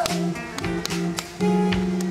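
Live band playing an instrumental passage: acoustic guitars strumming and picking a repeated figure, with sharp drum hits.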